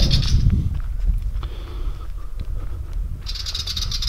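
Wind buffeting the camera microphone with a continuous low rumble, mixed with footsteps on dirt and straw as the camera is carried along. A high, rapid chirring trill sounds briefly near the start and again near the end.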